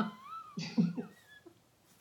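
A woman laughing: a high squealing note that rises and falls, then a few short breathy bursts of laughter about a second in.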